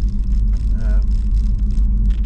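Steady low rumble of road and tyre noise inside the cabin of a BMW i3s electric car driving along a village street.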